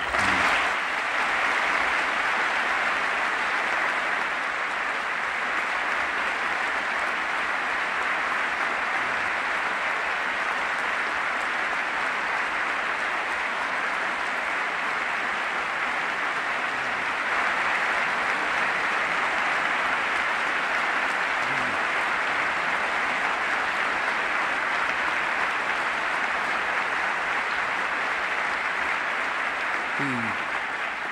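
Long, steady applause from a large audience clapping without a break.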